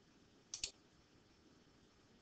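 A short double click from the presenter's computer about half a second in, the press and release of a button coming close together, advancing the slide animation. Otherwise near silence.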